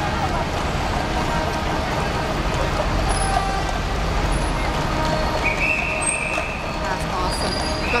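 Busy city street traffic running, with a deep engine rumble from buses and lorries that swells in the middle, and people talking around. A short, high, steady tone sounds for about a second near the end.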